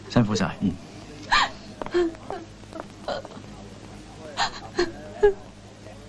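A man's short, breathy vocal gasps and whimpers: about half a dozen brief separate bursts, roughly a second apart, over a faint steady low hum.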